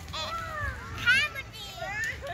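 Young children's high-pitched voices calling out, with the loudest cry about a second in.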